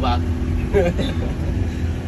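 Steady low rumble of a minibus engine running, heard inside the cabin, under short bits of voice.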